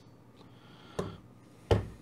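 Ratchet crimping pliers being released and handled after crimping a Dupont pin: a sharp click about a second in, then a louder knock near the end.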